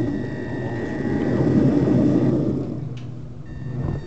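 Electric model-railway motor car running on the track, its motor hum and wheel rolling noise carried straight into the camera that is held on it by a magnet. A thin high whine cuts off a little past halfway, and the rumble dies down after it.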